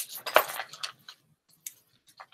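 Metal jewelry clinking and jangling as a tangled chain necklace is handled and worked loose: a quick cluster of clinks in the first second, then a single sharp click near the end.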